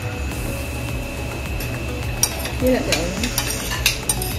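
Forks and spoons scraping and clinking on ceramic dinner plates, with a few sharp clinks in the second half, over a steady hum.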